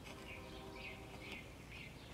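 Quiet pause in the room: a faint steady hum with a few faint, high chirps.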